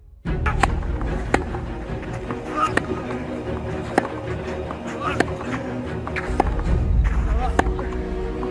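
Tennis ball struck with rackets in a rally on a clay court: sharp single hits, roughly one every one to one and a half seconds, over background music and voices.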